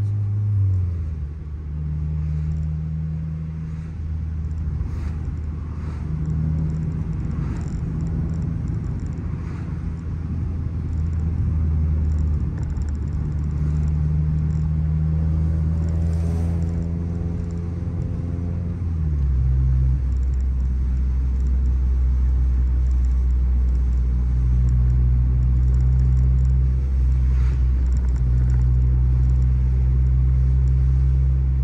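A 9th-gen Honda Civic Si's 2.4-litre K24 four-cylinder heard from inside the cabin through a Yonaka 3-inch exhaust and catless downpipe: a steady low exhaust drone while cruising. Its pitch steps down about a second in and again about two-thirds of the way through as the manual gearbox is shifted up.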